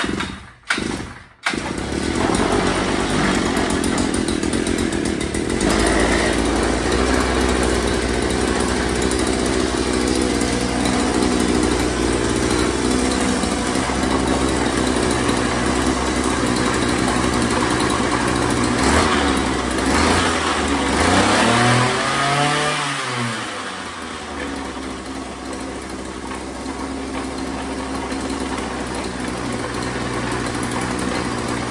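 Two-stroke ice auger engine pull-started on its rebuilt Walbro carburetor. After a few quick cord pulls it catches about a second and a half in and runs steadily at speed. About three-quarters through it revs up and drops back, settling to a quieter idle.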